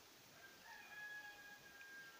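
A faint, distant animal call held at one steady pitch for about two seconds, beginning about half a second in.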